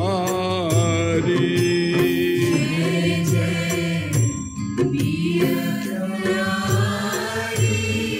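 Devotional Hindu kirtan music: a sung voice with a wavering, ornamented melody over steady held accompaniment.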